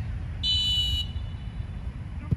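A referee's whistle blown once, a single short, steady, high-pitched blast of a little over half a second starting about half a second in, over a constant low rumble.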